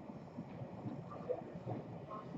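Quiet room tone with a few faint, short soft sounds.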